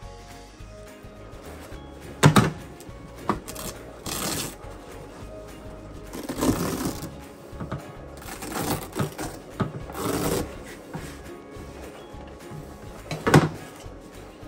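Background music, with the rustle and tearing of a leather seat cover being peeled off a foam seat cushion as its Velcro strips rip loose. There are several separate rips and pulls; the sharpest come about two seconds in and near the end.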